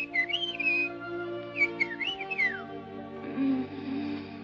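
Cartoon bird chirps, short whistled calls gliding up and down, over soft held orchestral chords: a cluster in the first second, more around two seconds in, the last one sliding downward.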